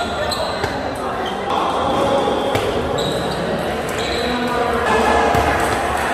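Table tennis rally: the ball clicks sharply off the paddles and the table in a quick back-and-forth, each hit ringing briefly in the hall.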